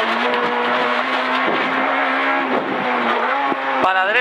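A Peugeot 208 R2 rally car's 1.6-litre four-cylinder engine, heard from inside the cabin, running at steady high revs under load along with tyre and road noise. There are brief dips in engine note about one and a half and two and a half seconds in.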